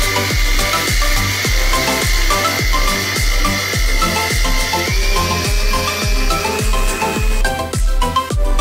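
Background music with a steady drum beat, about two beats a second. Under it an electric mixer grinder blends carrot milkshake with a thin steady motor whine, which steps up slightly in pitch about five seconds in and stops shortly before the end.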